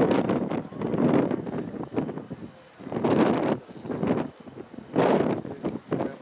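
Aerial firework shells bursting: several booms a second or two apart, each starting sharply and dying away with a rumble.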